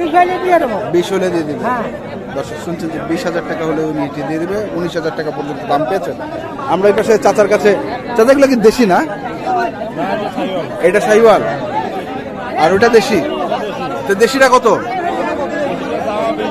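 Speech only: several men talking over one another in a crowd.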